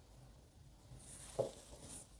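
Faint swish of a watercolour brush stroking damp paper while softening a colour edge, with a single dull knock about one and a half seconds in.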